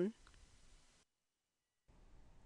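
The tail of a spoken word, then near silence: faint hiss that drops out to total silence for about a second before the hiss comes back.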